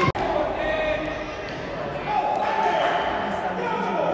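High children's voices calling out over the hubbub of an echoing indoor futsal hall, with a ball knocking on the hard court floor. The sound cuts out for an instant just after the start.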